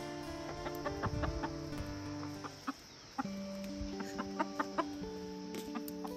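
Background music of steady held notes, with a hen clucking in short strokes over it, about a second in and again around four seconds in.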